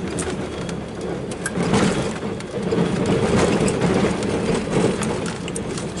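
Plow truck's engine running steadily under load, heard inside the cab, with scattered knocks and rattles as the truck pushes thin snow along a rutted driveway. The work is hard on the truck.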